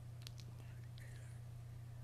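Quiet pause over a steady low hum, with a few faint clicks and a faint whispered voice about half a second to a second in.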